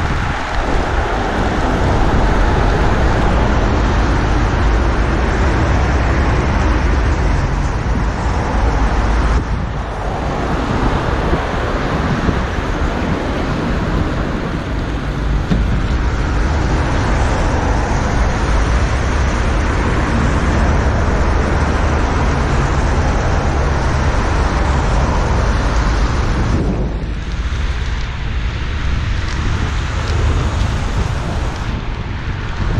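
Wind rushing over the microphone of a moving bicycle, mixed with the sound of car traffic on the road alongside. The noise eases briefly about a third of the way in and again near the end.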